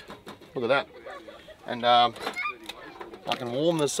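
A man's voice in drawn-out, sing-song sounds with swooping pitch and no clear words, three or four stretches, the strongest about two seconds in.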